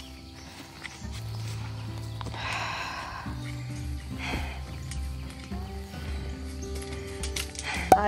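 Background music of held low notes that change about once a second, with a couple of brief noises about two and a half and four seconds in.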